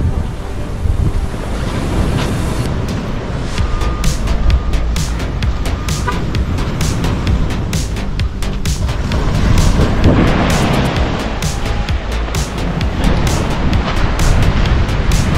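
Wind rumbling on the microphone over the sound of the surf. Background music with a steady beat comes in about three seconds in.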